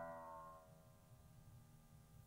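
The tail of a plucked electric guitar low E string ringing and fading out in the first half second, then near silence.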